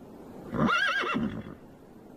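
A pegasus whinnying once: a single high, wavering call about a second long.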